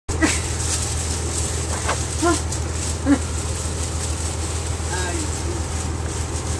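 Steady low drone of a 1999 Nova Bus RTS's diesel engine heard inside the bus, with light interior rattles. Several brief voice-like calls cut through it.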